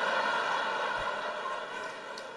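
A live theatre audience laughing and applauding in one wash of noise that slowly fades.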